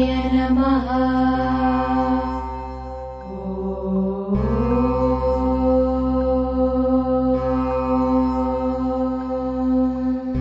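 Devotional mantra chanting in long held notes over a steady drone; about four seconds in the pitch slides upward and then holds.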